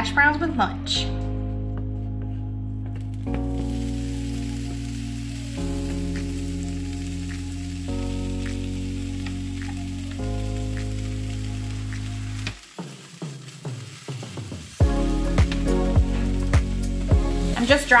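Diced chicken sausage sizzling as it fries in a skillet, under background music of sustained chords that change every couple of seconds. About two-thirds of the way through the music stops for a couple of seconds, leaving the sizzle and a few clicks, then comes back with a steady beat.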